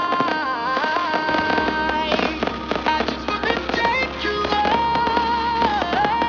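Music with a melody line over a steady bass, with the pops and crackle of aerial fireworks bursting through it, more of them from about two seconds in.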